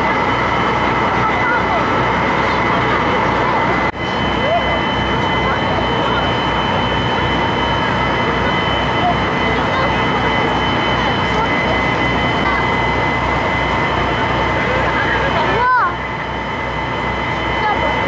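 Passenger ferry's engine running steadily, a low regular throb under a constant whine, with passengers chatting in the background. The sound breaks off sharply about four seconds in and again near the end.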